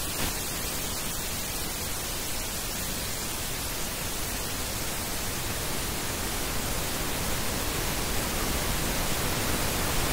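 Pink noise test signal at −6 dB from a Burosch AVEC reference test pattern: a steady, even hiss across all pitches. It is played speaker by speaker as a 5.1 surround channel check.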